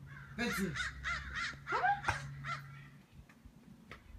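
A run of short, high-pitched animal cries, about three or four a second, for roughly two seconds before they stop.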